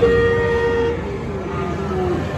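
A vehicle horn honks once, a steady held note lasting about a second, as a sound effect in a dark-ride show scene. A lower tone follows and slides slowly downward.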